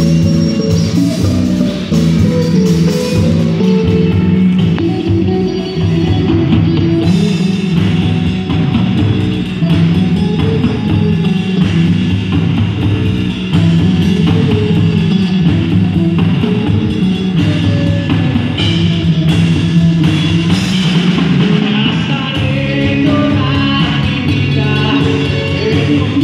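Live rock band playing a song: drum kit with electric and acoustic guitars and bass, steady and loud.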